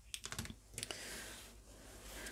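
A few light, quick clicks and taps, then a faint rustle as a paper postcard is slid across a wooden tabletop by hand.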